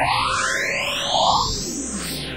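Virtual ANS spectral synthesizer playing back hand-drawn brush strokes as sound: thick, hissy bands of tone slide upward in pitch, with a thin whistle-like tone rising alongside them. A short, higher blip comes in about a second in.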